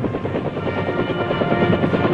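Helicopter running with a steady rotor and engine noise, with orchestral music coming in about halfway through.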